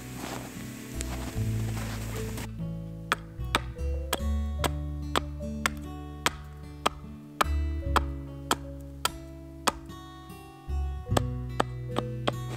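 Hatchet chopping into a wooden stake on a stump, sharp strikes about twice a second, starting a couple of seconds in, as the point of the stake is cut. Background acoustic guitar music plays throughout.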